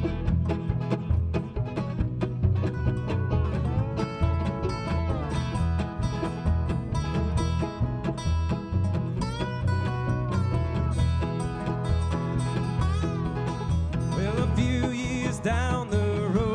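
A bluegrass-style string band playing an instrumental passage: banjo and acoustic guitar picking over upright bass and a steady low beat. A slide instrument, a lap steel, glides between notes several times.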